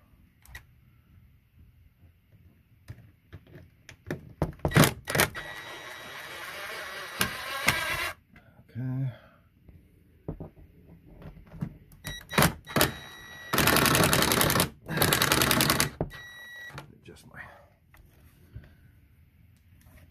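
Cordless drill/driver running to back out the square-head screws holding the door's hanging hardware: one run of about three seconds, then two shorter runs of about a second each, with clicks and knocks of the tool and hardware against the wooden door around them.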